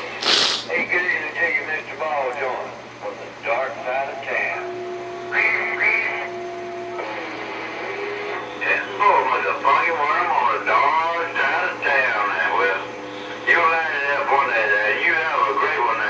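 Distant CB operators' voices coming in over a Galaxy Saturn base radio's speaker, garbled and hard to make out, with a short burst of noise just after the start and a steady tone under the talk from about four and a half to seven seconds in.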